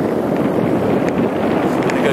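Wind rushing over the microphone of a camera mounted on a moving bicycle, a steady, loud rush with no pitch.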